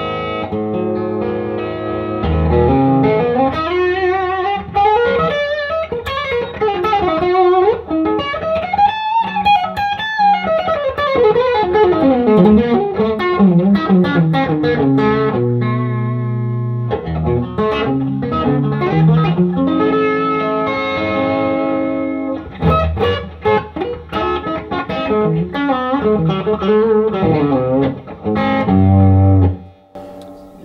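1958 Gibson Les Paul Junior electric guitar with a single P-90 pickup, played through an amplifier: improvised lead lines with quick runs and bends that climb and fall, held low notes about halfway through, then choppier picked notes and chords that stop suddenly at the end.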